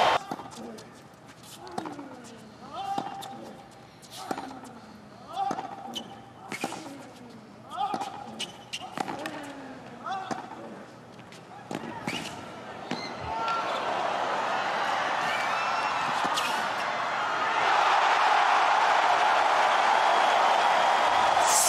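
Tennis rally: racket strikes on the ball about every 1.2 seconds, each followed by a player's grunt falling in pitch, for about ten shots. Then crowd cheering swells about thirteen seconds in and grows louder near the end as the point is won.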